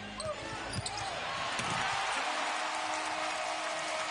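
Basketball bouncing on the hardwood court in the first second, then an arena crowd's cheering that swells and stays loud from about halfway through, as the dunk goes down.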